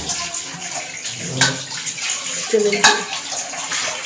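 Steady hiss of a gas stove burner's blue flame, turned low under a large aluminium pot to cook biryani on dum. Two sharp clicks about a second and a half and three seconds in.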